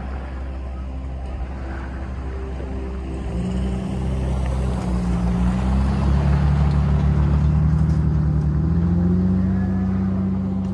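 Jeep Wrangler engine as the vehicle drives slowly past close by, a low running drone that grows louder from about three seconds in and is loudest in the second half.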